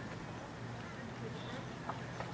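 Hoofbeats of a horse cantering on arena sand, with faint background voices talking.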